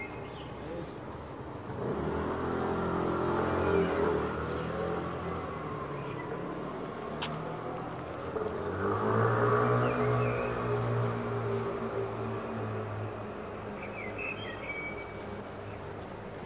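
Two motor vehicles passing on the street one after the other, each engine rising and fading over a few seconds, about six seconds apart.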